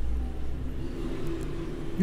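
Low rumble of handling noise on a handheld phone's microphone as shirt fabric is gripped and lifted up close, strongest in the first half-second, over faint steady room hum.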